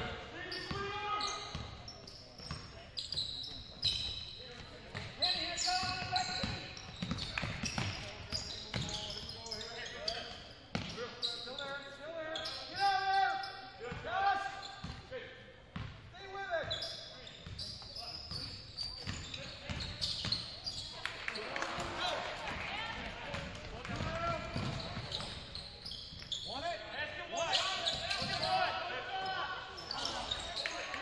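Basketball being dribbled on a hardwood gym floor, repeated bounces amid players', coaches' and spectators' voices, echoing in a large gymnasium.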